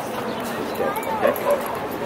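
A dog giving a few short whimpering yips about a second in, over a murmur of voices.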